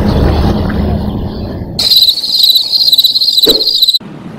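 A low rumble for about two seconds, then a cricket chirping sound effect comes in abruptly as the background drops away: a steady, high, rapidly pulsing trill that stops suddenly.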